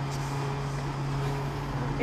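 Petrol dispenser pump running with a steady hum while fuel flows through the nozzle into the car's tank.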